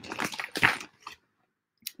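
Small metal jewelry clinking and rustling as a hand rummages through a pile of rings, a quick cluster of clicks in the first second, then a single click near the end.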